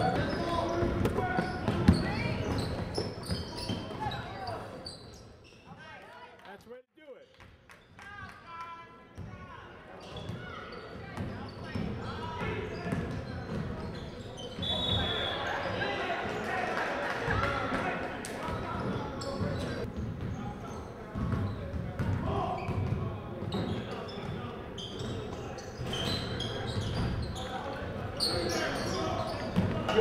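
Basketball game on a hardwood gym floor: a ball bouncing among players' voices and calls in a large gym, with a quieter stretch about a fifth of the way through.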